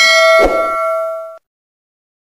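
A bell-like ding sound effect: several ringing tones struck together and fading away over about a second and a half, with a soft low thump about half a second in.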